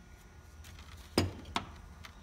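Two short clinks of hard objects knocked on a worktop, a little over a second in and about a third of a second apart, the first louder, as water and a brush are brought to the paint for mixing.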